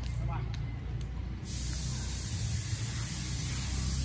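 A brief voice and a racket striking a shuttlecock, over a low outdoor rumble; about a second and a half in, a steady high hiss switches on abruptly and stays.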